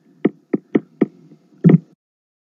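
Five short, dull knocks or clicks, irregularly spaced, the last and loudest one near the end, over a faint low hum.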